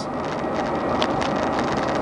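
Car driving at highway speed, heard from inside the cabin: a steady rush of tyre, road and engine noise, with one brief click about a second in.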